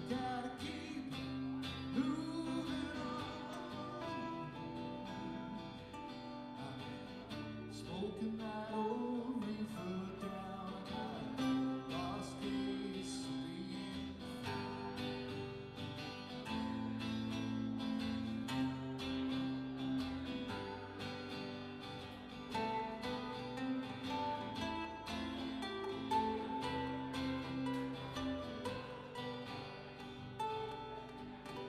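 Two acoustic guitars strumming a song, with a man singing.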